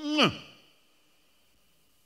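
A man's voice finishing a word on a falling pitch in the first half-second, then near silence.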